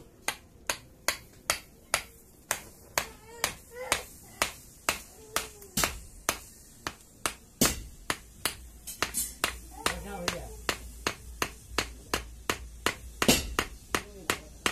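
Steady, evenly paced sharp hammer taps, about two and a half a second, driving a sword's handle down onto its red-hot tang as it is burned into the grip.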